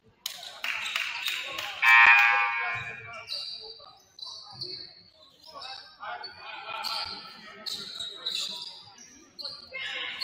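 Basketball bouncing on a hardwood court, then a loud scoreboard horn about two seconds in, held for about a second. Afterwards come short, high sneaker squeaks on the floor and players' voices.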